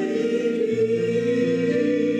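A man and a woman singing a hymn together, with steady held pipe organ chords beneath that change once less than a second in.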